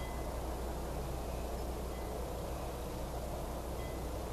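Steady background hiss with a constant low hum, unchanging throughout, and no distinct event: room tone during a pause in speech.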